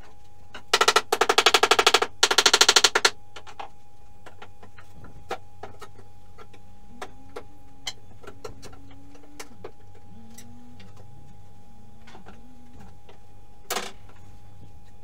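Floorboard demolition with a crowbar: two loud rattling bursts of rapid clicks about a second in. Then scattered light knocks and faint creaks of old boards, and a short rattle near the end.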